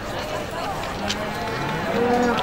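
Indistinct talk from several people at once, at a steady moderate level, with a few faint clicks.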